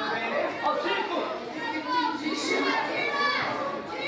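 Several young voices shouting and calling over one another during a youth football match, with a hubbub of chatter from the pitch and touchline.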